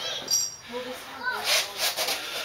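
Faint, muffled voice sounds with a few short, sharp breaths.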